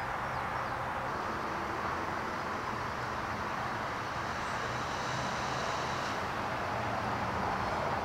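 Steady outdoor background noise: a constant hum and hiss of distant traffic with no distinct events.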